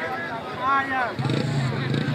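Men's voices calling out, then a steady low engine hum starts about a second in and holds.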